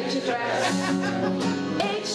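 A woman singing with acoustic guitar accompaniment.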